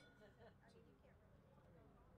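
Near silence, with faint distant talking and a couple of light clicks.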